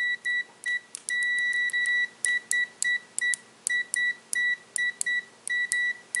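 Continuity beeper of an Aneng AN-888S bench multimeter: a string of short, high beeps at irregular spacing, one held for about a second, sounding the instant the test probes make contact. The beep answers contact quickly, the sign of a fast continuity test.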